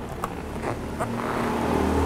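A low engine hum with a steady pitch that grows louder through the second half. There are a few light clicks in the first second.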